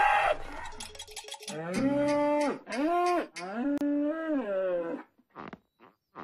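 Cartoon cow mooing three times, each moo rising and then falling in pitch, the last one the longest.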